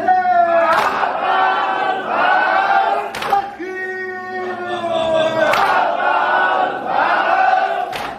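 Men's voices chanting a Shia mourning lament (noha) led by the eulogist, with the crowd of men striking their chests in unison (sineh-zani): a sharp, loud slap about every two and a half seconds.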